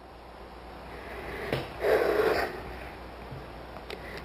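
A woman's audible breath out, a short huff of annoyance, swelling about two seconds in, with a faint click just before it, over a low steady room hum.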